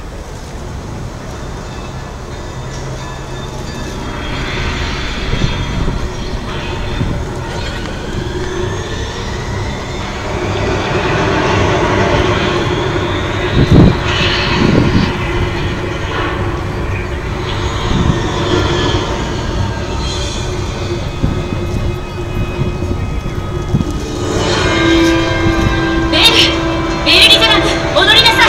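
Opening of a projection-mapping show's soundtrack: a building bed of rising whooshes and low rumble, with two heavy hits about fourteen seconds in. A sustained musical note comes in near the end.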